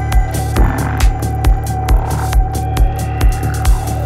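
Electronic dance music in the psytrance vein: a four-on-the-floor kick drum about twice a second, with a bassline filling between the kicks. A held synth tone and short crisp hi-hat ticks ride on top.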